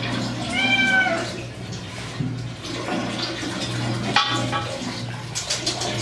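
Long-haired white cat meowing in protest while being bathed in a sink, with one clear drawn-out meow about half a second in and a shorter cry around four seconds in, over running and splashing water.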